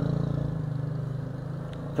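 A vehicle engine running with a steady low hum, slowly growing fainter.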